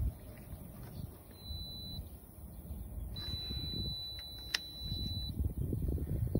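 Handheld Extech insulation tester sounding a thin, steady high-pitched beep while its test voltage is applied to a water pump motor's winding leads. The beep comes twice: briefly about one and a half seconds in, then for about two seconds from three seconds in, with one sharp click partway through the longer beep.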